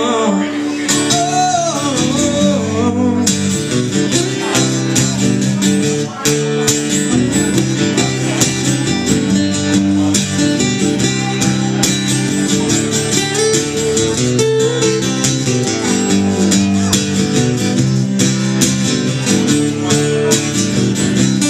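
Two acoustic guitars strummed and picked together, playing a song live.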